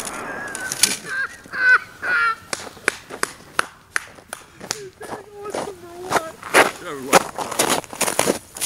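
Footsteps crunching through snow as irregular sharp crunches, with people's voices calling out.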